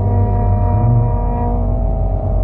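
Carnatic vocal music: a male singer holds a low, steady note with a slight lift near the middle, over a sustained drone.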